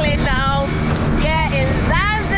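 Small motorboat's outboard engine running steadily under a woman's short, high-pitched vocal calls that rise and fall.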